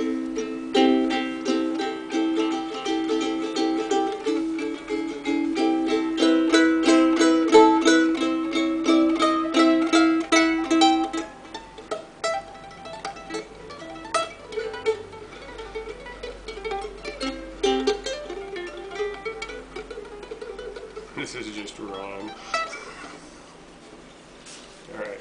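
Kamaka ukulele strummed in fast, steady chords, loudest in the first half. From about midway it turns to lighter, sparser playing with picked single notes, and it breaks off briefly near the end.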